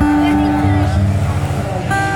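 A woman singing long, held notes with a strummed acoustic guitar, the notes changing about twice.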